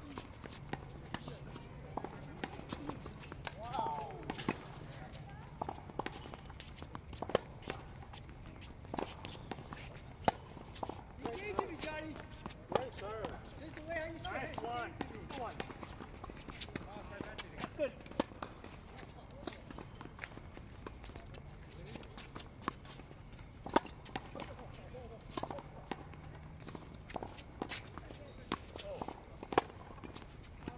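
Tennis balls struck by rackets and bouncing on a hard court in a practice rally: sharp pops at irregular intervals, a few much louder than the rest. Voices murmur in the background in the middle of the stretch.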